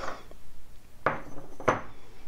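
Small ceramic paint-mixing dish knocking and clinking as it is handled and set down on a wooden table beside other dishes and plastic cups, with two sharp knocks, one about a second in and one near the end.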